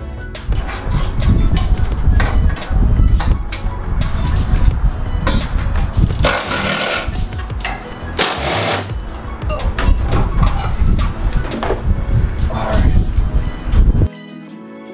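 Loud workshop noise from work on a car's exhaust on a lift: repeated metal knocks and clanks with low rumble, and two harsh bursts of noise about a second long near the middle, under background music.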